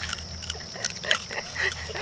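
Raccoons snuffling and chewing close to the microphone: an irregular run of short, clicky noises.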